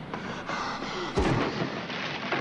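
Film soundtrack: a man falling down an Underground escalator, with one heavy, deep thud a little over a second in over a steady noisy background.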